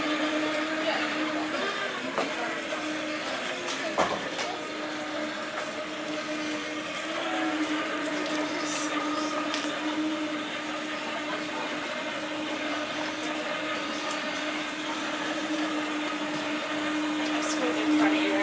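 A steady machine hum at one unchanging pitch, with faint voices in the background.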